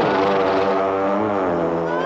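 Film monster sound effect: one long, wavering creature bellow that holds for most of two seconds and drops lower near the end.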